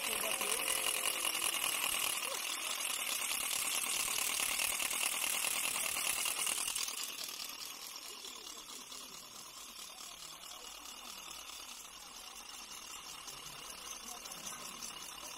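Indistinct voices of people gathered outdoors, over a steady high hiss that drops away about seven seconds in, leaving a quieter background.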